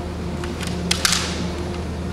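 Bamboo kendo shinai knocking together in a few sharp clacks, two of them close together around the middle, over the steady hum of a large hall.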